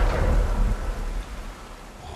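A deep rumble that swells at once and fades away over about a second and a half, over the steady hiss of water pouring down in a sewer tunnel.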